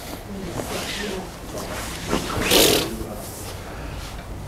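Faint voices and room noise, with one short breathy rush of noise about two and a half seconds in.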